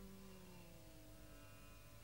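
Background music, a strummed acoustic guitar chord dying away to near silence, over a low steady mains hum.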